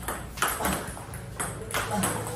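Table tennis rally: a celluloid ball clicking sharply off rubber-faced paddles and bouncing on the table, about five clicks in two seconds, as the players loop against backspin.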